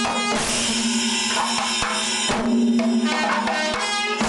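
Kerala Panchavadyam ensemble: timila hourglass drums struck by hand in dense, fast strokes, with the long ringing tones of metal cymbals over them.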